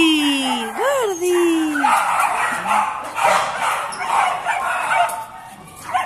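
A dog's long, drawn-out whining call that falls in pitch over about two seconds. It is followed by a few seconds of rapid, choppy excited yipping.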